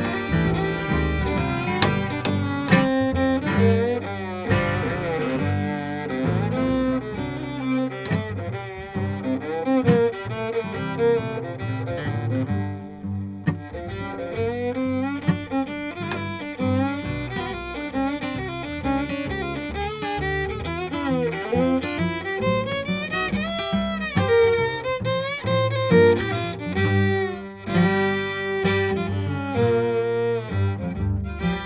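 Bluegrass string band playing an instrumental break: a bowed fiddle carries the tune, with many sliding notes, over plucked upright bass and strummed acoustic guitar.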